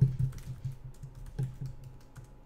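Typing on a computer keyboard: a quick, irregular run of keystrokes, entering a link into a live chat, thinning out near the end.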